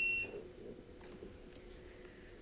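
A steady, high-pitched electronic beep from the public-comment timer, cutting off a moment in: the speaker's time has run out. Faint room tone with a low hum follows.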